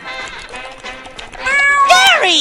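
A cartoon snail's cat-like meow, loud, beginning near the end over light background music.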